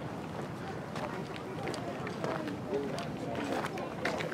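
Indistinct voices of people talking, not close to the microphone, with a few short sharp clicks scattered through.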